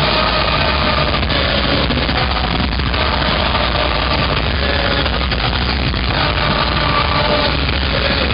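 Punk rock band playing live at full volume, with electric guitar, bass and drums, heard from within the crowd as a loud, steady wall of sound.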